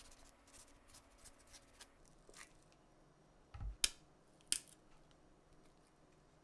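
A chef's knife cutting around an avocado, with faint crisp ticks as the blade goes through the skin. About three and a half seconds in there is a low thud, then two sharp clicks as the blade is struck into the avocado stone.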